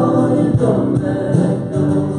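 Live worship band playing a song: a man and a woman singing into microphones over acoustic guitar, electric bass, keyboard and drum kit.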